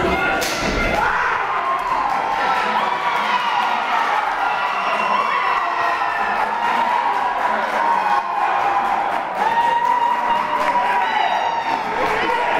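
A single heavy thud on the wrestling ring about half a second in, then the crowd shouting and cheering throughout, with many voices calling out at once.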